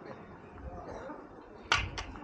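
A single sharp click near the end, with a lighter click just after, over a low background murmur of voices.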